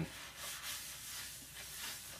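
Paper towel rubbing against a painted plastic model part: a faint, uneven scuffing as excess thinned paint wash is wiped off.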